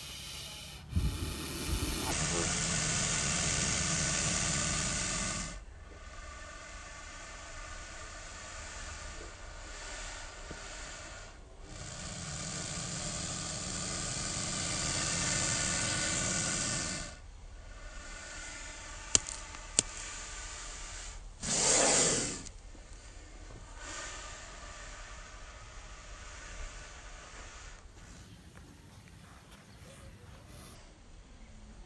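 Hooded cobra hissing in long exhalations: one of about three seconds, then one of about five seconds, and later a shorter, louder hiss. Two sharp clicks come just before the last hiss.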